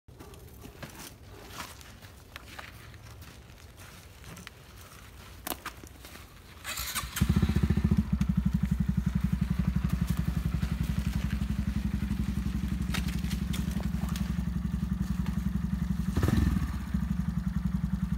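A Honda Grom's 125 cc single-cylinder four-stroke engine catches about seven seconds in and then idles steadily, with a brief rev a little before the end. Before it starts there are only faint scuffs and knocks.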